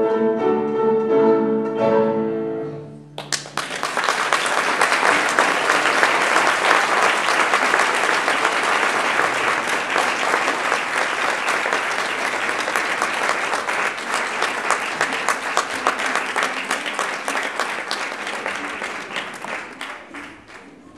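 A children's string ensemble of violins and cellos plays the final held chord of a piece, which ends about three seconds in. Then the audience applauds, dense clapping that thins out near the end.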